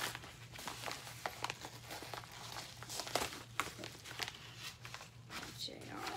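Paper packaging rustling and crinkling as a padded mailer is handled and opened, with irregular small crackles and clicks throughout.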